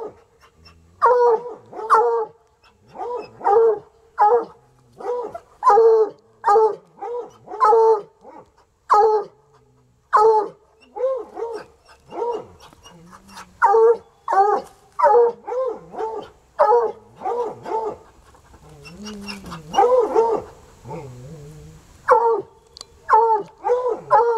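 Two coonhounds barking in a long series of short, loud barks, one or two a second with brief lulls. They are sounding off at an animal that has crawled up inside the car's undercarriage: the hounds' hunting instinct to bay at cornered quarry.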